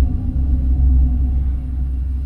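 Deep cinematic rumble, the low tail of a dramatic musical sting, fading away steadily.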